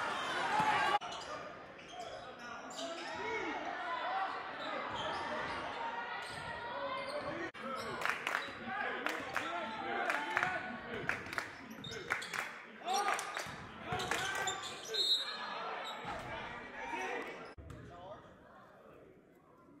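Live gym sound at a basketball game: a basketball bouncing on the hardwood court again and again, with voices of players and spectators calling out, echoing in the large hall.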